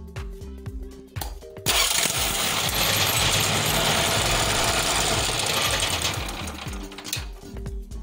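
Firman portable generator's electric key starter cranking the engine: a loud, rapid mechanical clatter that starts suddenly about two seconds in and dies away after about five seconds, showing that the newly fitted battery powers the starter. Background music plays underneath.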